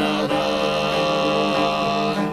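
Background music: a song holding a sustained chord with a long drawn-out sung note.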